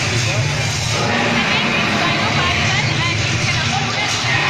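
People talking and chattering over a steady low rumble.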